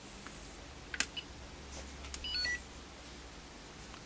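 Retro Chip Tester Pro's buzzer giving a quick run of short beeps at several pitches about halfway through, after a click about a second in: the tester signalling that the 74LS193 chip has passed as genuine.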